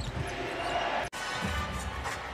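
Televised game sound from an NBA arena: a basketball bouncing on the hardwood court over arena noise and piped-in music. About a second in, the sound drops out abruptly for an instant where the footage is cut to another possession.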